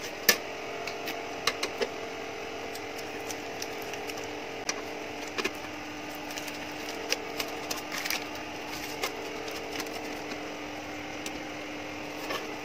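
Scattered light clicks and taps of hard plastic and sheet-metal fan parts being handled and fitted together by hand, the sharpest click just after the start.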